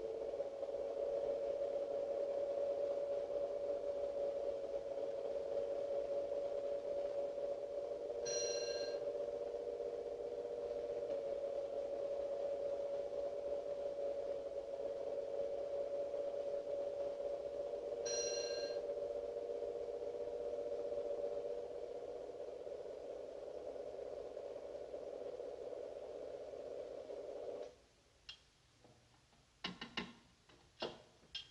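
Suspense film music: a low, steady held chord of two close pitches that beat against each other, with a soft bell-like ping about every ten seconds. It cuts off abruptly near the end, and a few sharp clicks follow.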